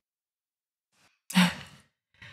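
Dead silence for over a second, then a woman's single short sigh about a second and a half in.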